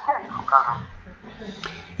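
A man's wordless vocal moan, wavering in pitch, that fades in the second half into quieter breathy sounds.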